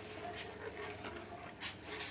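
A few faint clinks and scrapes of a metal ladle against a metal kadai as thick tamarind chutney is stirred.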